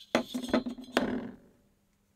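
Aluminium heat-sink parts clinking and knocking together as they are handled, several sharp clinks in the first second with a brief ringing.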